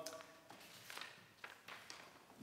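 Faint rustles and light taps of paper sheets being shuffled and handled, about half a dozen short strokes.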